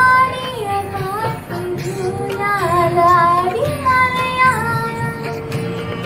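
A girl singing solo, a melodic line of long held notes joined by sliding ornaments.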